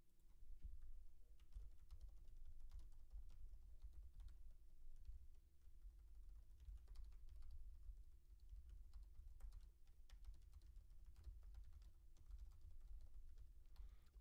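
Faint computer keyboard typing, irregular key clicks scattered throughout, over a low rumble and a faint steady hum.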